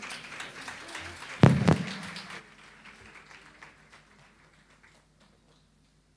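Brief scattered applause after a song, dying away within a few seconds, with two loud thumps about a second and a half in.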